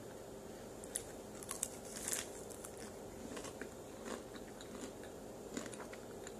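Close-up chewing of crunchy chicken tenders: irregular crunches and wet mouth clicks, most dense between about one and two seconds in.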